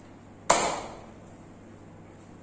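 One sharp smack about half a second in, loud against the quiet background, with a short fading ring after it.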